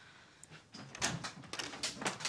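A wooden door with frosted glass panels being opened: a series of light clicks and knocks starting about half a second in.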